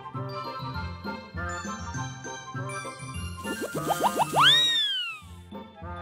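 Playful comedy background music with a repeating bass pattern and tinkling notes. About three and a half seconds in, a comic sound effect plays: several quick rising whistle glides, then one loud long whistle that rises and then falls away.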